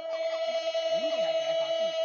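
A woman's voice holding one long, steady high note in Red Dao folk duet singing, with a second, lower voice rising and falling beneath it.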